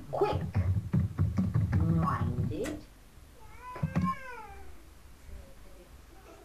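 Voices for about the first three seconds, then a single high vocal call that rises and falls in pitch, about four seconds in.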